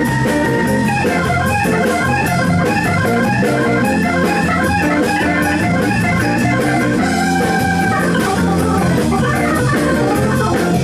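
Nord C1 organ, with a Hammond-style tone, playing a fast solo of quick, short notes with a couple of held notes, over a live band's drums.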